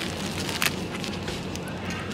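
Steady low hum of a supermarket's chilled display cases, with a few brief crinkles and clicks of plastic packaging as a pack of enoki mushrooms is taken off the shelf.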